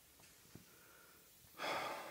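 Near-quiet pause, then, about one and a half seconds in, a man's short audible in-breath close to the microphone.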